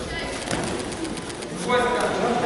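Sanda bout: short knocks of gloved punches landing and feet moving on the padded mat, with a loud shout from a voice near the end.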